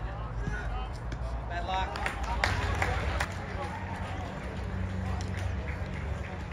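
Outdoor football-match sound: players and onlookers shouting and calling across the pitch, too far off for words to be made out, with a few sharp knocks about two and a half to three seconds in, the loudest moment.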